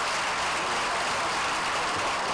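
Steady hiss of background noise with no distinct events, strongest in the middle of the pitch range.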